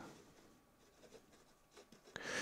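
Faint sound of a pen writing on paper: a few soft strokes in near silence.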